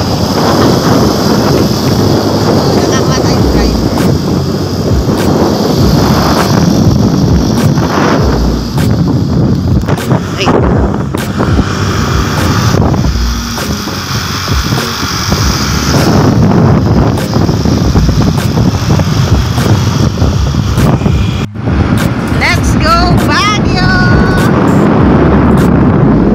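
Wind buffeting a phone microphone on a moving motorcycle, with road and engine noise underneath; the rush drops out sharply for a moment near the end.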